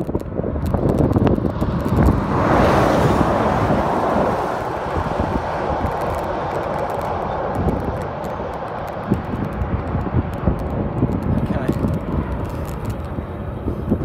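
Road train overtaking a bicycle at close range: a rush of engine and tyre noise builds, peaks about three seconds in, then fades as the truck pulls away. Low wind rumble on the microphone continues underneath.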